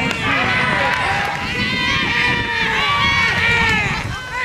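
Several young baseball players' voices shouting and calling at once, overlapping and high-pitched, without a break.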